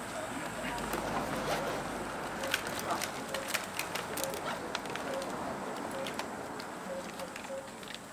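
Rustling and sharp clicks of medical equipment being handled in an open trauma bag, busiest in the middle, over a background murmur, with a few short faint low tones now and then.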